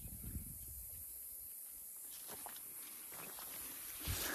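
Faint footsteps on dry, bare soil, a few soft steps, with light handling and leaf rustle.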